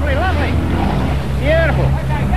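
A motorboat's engine running steadily with a low hum, under brief excited shouts from people on board near the start and again about one and a half seconds in.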